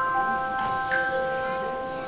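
Bell-like tuned percussion notes struck one at a time and left to ring, several pitches overlapping. A new note sounds just after the start and another about a second in.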